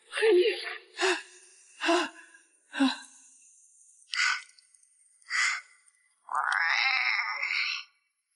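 A voice crying out in distress four short times, then two breathy gasps, then one long wavering wail near the end.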